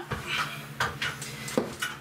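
A few light clicks and clatters of a hand tool being handled and set down, over the steady hum of a running ventilation fan.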